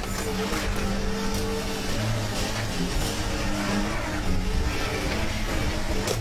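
A car-dismantling excavator running under load, its engine and hydraulics working steadily as its grab tears into a car body.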